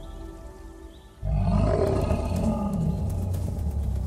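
Soft music fades, then about a second in a loud animal roar comes in suddenly, a bear's roar played as a sound effect, with deep rumble and a pitch that rises and falls.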